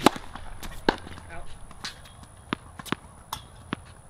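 A tennis serve: one sharp, loud crack as the racket strings strike the ball. Several fainter sharp knocks follow at irregular intervals over the next few seconds.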